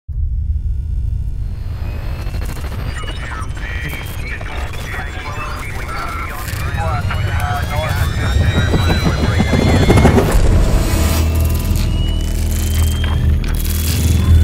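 Deep rumble of a helicopter's rotor and wind, growing louder to a peak about ten seconds in, with voices and music mixed over it.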